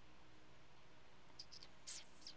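Near silence, then a stylus on a tablet's glass screen erasing handwriting: three light ticks about a second and a half in, and a louder short scrape near the end.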